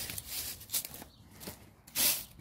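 A few footsteps on dry leaves and soil, irregularly spaced.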